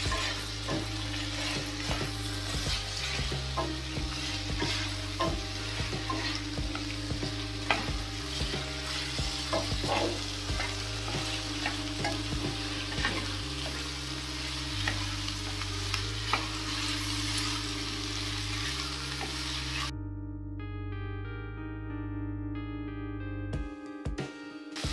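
Carrots and green peas sizzling over a high flame in a stainless steel kadai while a spatula stirs them, with frequent small clicks and scrapes of the spatula against the pan. About four seconds before the end the sizzling cuts off suddenly, leaving only background music.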